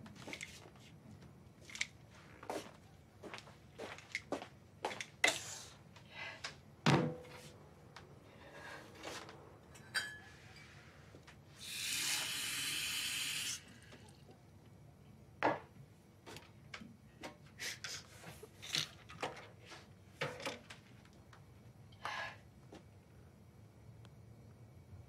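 Scattered small clicks and knocks of things being handled and set down on a kitchen counter, with a kitchen tap running for about two seconds near the middle.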